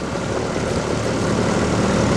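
Small outboard motor running steadily on the coaching launch that keeps pace beside the sculler, a low drone under a hiss of wind and water, growing slightly louder.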